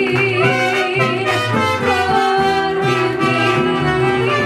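Mariachi band playing a lively passage, trumpets carrying the melody over a rhythmic guitarrón bass line.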